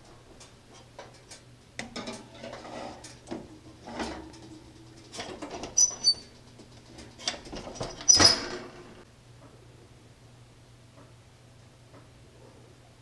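Stainless steel oven door being opened and a metal springform cake tin set inside, with a run of small clanks and clicks, then a loud metallic clunk with a brief ring about eight seconds in as the door shuts. A low steady hum runs underneath.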